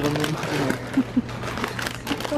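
Plastic snack-chip bags crinkling as they are handled in a shopping cart, with brief bits of voice and a steady low hum underneath.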